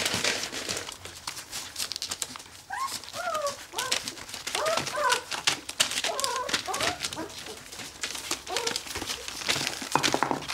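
Puppies whimpering in a run of short, high squeaks that rise and fall in pitch, starting about three seconds in, while they root with their noses at a cat's belly. Newspaper crinkles under the moving animals.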